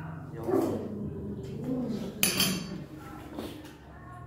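Spoon clinking and scraping in a ceramic bowl while eating, with one sharper, brief noise a little over two seconds in. Low voices murmur underneath.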